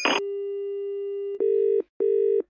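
Telephone line after the call is cut off: a brief click, a steady tone for about a second, then two short beeps of an engaged tone.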